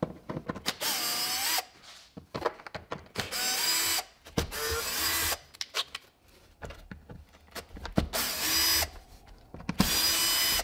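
Cordless drill-driver with a T25 Torx bit running in about five short bursts, each under a second, as it backs the screws out of a plastic air filter housing lid. Small clicks come between the bursts.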